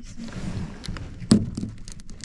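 Handling noise as a speared flounder is put into a plastic cooler box: soft rustling and small clicks, with one sharper knock against the plastic a little past halfway.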